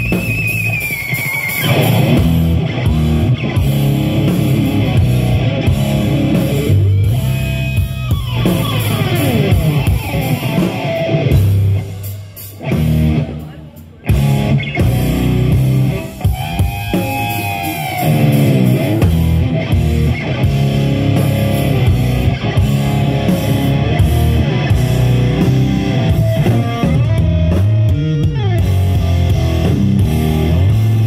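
Live instrumental rock trio: a lead electric guitar with swooping pitch bends over bass guitar and drum kit. The band drops away briefly about twelve seconds in, then comes back in full.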